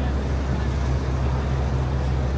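Busy city street ambience: a steady low rumble of traffic under an even wash of street noise.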